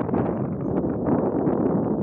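Wind buffeting the microphone: a loud, uneven low rumble with no pauses.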